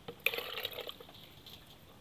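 A green plastic dipper scooping water in a lotus pot: one short splash and slosh about a quarter second in, while the pot is being bailed dry.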